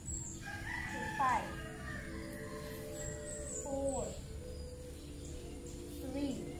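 Rooster crowing twice, the two crows a few seconds apart, each ending in a falling note. Small birds chirp high-pitched in the background.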